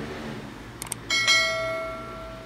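Subscribe-button animation sound effect: a quick double mouse click, then a single bell ding that rings on and slowly fades.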